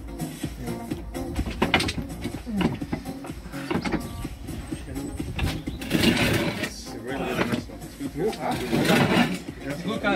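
Background music with steady bass notes, and loud bursts of a man's voice about six and nine seconds in.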